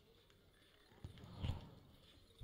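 Faint hoofbeats of a pair of bullocks running on a dirt track, a short patch about a second in, with near silence otherwise.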